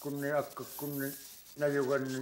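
A man speaking in Inuktitut, with a faint scraping of a snow knife cutting through packed snow behind the voice.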